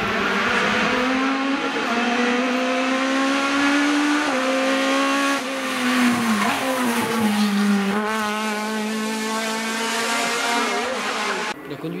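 Rally car engine revving hard as it accelerates, with a brief dip in pitch at a gear change. The note then falls as it lifts off and holds a lower, steadier pitch, and the sound cuts off abruptly near the end.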